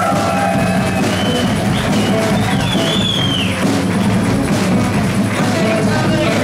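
Live rock band playing 1970s rock music with electric guitars, bass and drum kit, loud and steady. Around the middle a high line bends up and down in pitch over the band.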